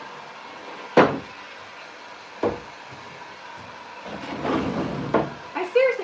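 Hard knocks of wood on wood: a loud sharp one about a second in and a lighter one a second and a half later. Around four seconds a rushing, rustling noise builds and ends in a third knock, and a woman's voice begins at the very end.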